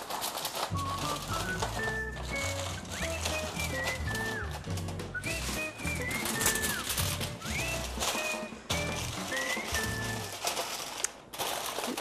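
Aluminium foil crinkling and crackling as it is pressed and crimped over the rim of a disposable aluminium roasting pan, over background music.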